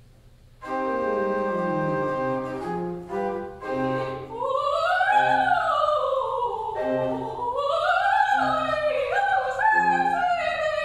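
Classical solo singing with keyboard accompaniment. Held chords over a stepwise falling bass begin just under a second in, and a high female voice enters about four seconds in, singing long phrases that rise and fall in pitch.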